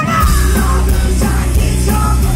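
A hard rock band playing live at full volume, with heavy bass and a yelled lead vocal. The full band comes in just after the start, out of a sparser passage.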